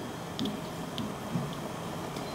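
Low kitchen room noise with a few faint, light clicks, and a brief faint low sound about one and a half seconds in.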